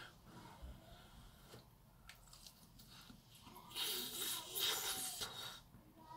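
A man biting into and chewing a hot battered cauliflower wing, with soft mouth noises. About four seconds in comes a louder stretch of breathy huffing through the mouth, lasting a second and a half, as the food is too hot.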